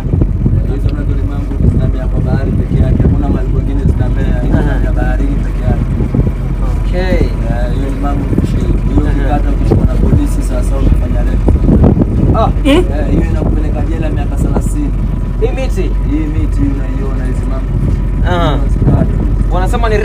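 Motorboat engine running steadily under men talking.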